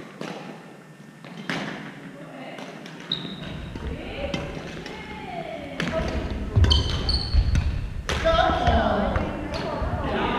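Badminton rally on a wooden gym floor: several sharp racket hits on the shuttlecock and short squeaks of court shoes, with voices in the hall.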